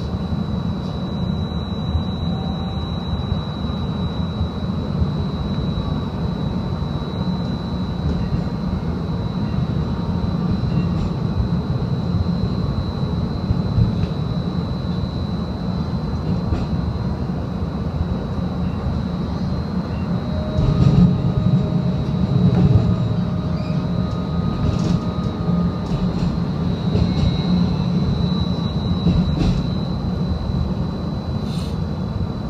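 Seattle streetcar running, heard from on board: a steady low rumble of the wheels on the rails with a constant high whine over it. The rumble grows louder for a couple of seconds about two-thirds of the way through, with a few light clicks.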